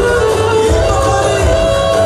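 Loud live dance music with a pulsing bass beat and a held, winding melody line, with a man singing into a microphone.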